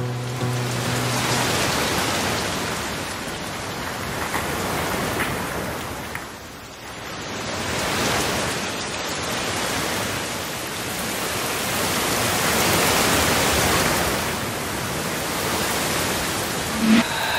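A steady, rain-like rushing noise that swells and eases slowly, dipping about six to seven seconds in. The tail of guitar music fades out in the first second or so.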